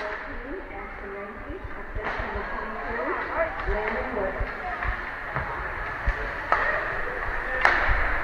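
Ice hockey rink during play: a background of spectators' voices chattering, broken by a few sharp knocks of sticks and puck. The loudest knock comes just before the end.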